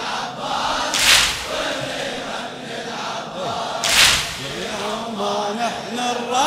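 A male chorus chanting a Shia latmiya refrain, with two loud, sharp percussive hits about three seconds apart. Near the end a solo male voice begins singing.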